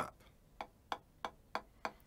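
Drumstick playing taps on a practice pad: soft, evenly spaced single strokes, about three a second, with the stick coming back to a low height after each.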